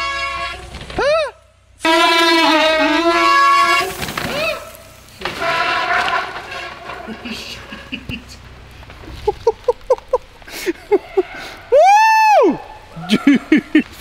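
Men's hollering and whooping: long drawn-out yells in the first few seconds, then short yelps and one loud rising-and-falling 'woo' near the end.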